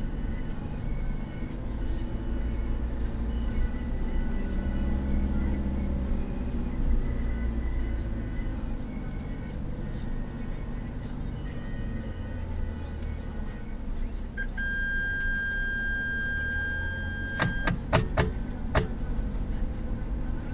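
Low, steady rumble of a car driving slowly along a narrow, rough concrete lane, heard from a dashcam inside the cabin. Near the end a steady high tone holds for about three seconds, followed by several sharp clicks.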